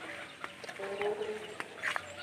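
Chickens clucking: several drawn-out calls overlapping, with a few sharp clicks among them.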